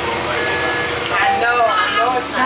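Indistinct talking inside a moving 2005 Gillig Phantom city bus, over the steady running of its Cummins ISL diesel drivetrain, heard from within the passenger cabin.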